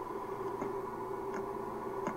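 A faint steady hum with soft, evenly spaced ticks, about one every three-quarters of a second.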